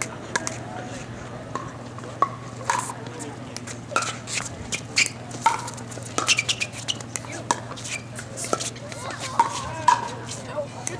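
Pickleball rally: paddles striking the hard plastic ball with sharp pocks, about a dozen hits spaced roughly half a second to a second apart.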